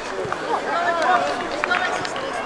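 Voices calling and shouting out on an open football pitch, no words clear, with a couple of short sharp knocks near the end.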